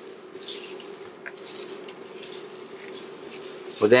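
A silicone spatula stirring and scraping barley grains and diced onion around a metal pot as the barley toasts in oil, in soft, irregular swishes over a faint steady hum.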